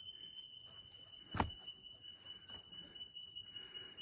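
Faint, steady high-pitched insect drone, with a single sharp click about a second and a half in.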